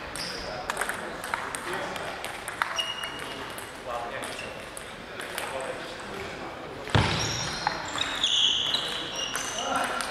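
Table tennis balls clicking off tables and bats around a sports hall, mixed with background voices and short high squeaks. A louder knock comes about seven seconds in.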